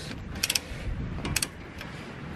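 Ratcheting torque wrench with a 21 mm socket clicking in two short runs, about half a second in and again after a second, as it backs out an already-loosened front caliper bracket bolt.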